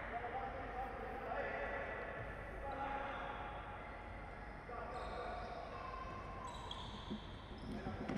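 Faint sounds of indoor futsal play on a wooden court: the ball thudding off feet and floor and players calling to each other, carried by the large hall.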